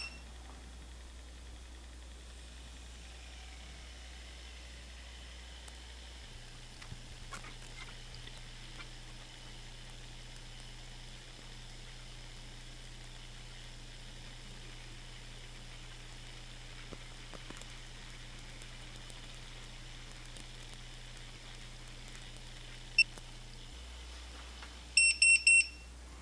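Faint steady electrical hum while PEM hydrogen water bottles run an electrolysis cycle, its low pitch shifting about six seconds in. Near the end the bottle gives a short high double beep as the cycle finishes.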